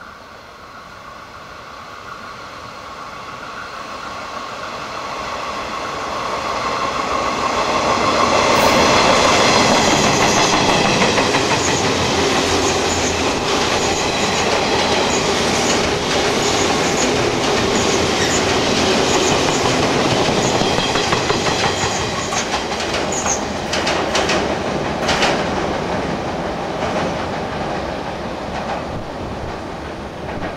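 A 489-series electric train passing. Its running rumble and a steady hum of several tones build as it approaches, are loudest from about nine seconds in, then ease off as it moves away. A few sharp clicks of the wheels over rail joints come past the two-thirds mark.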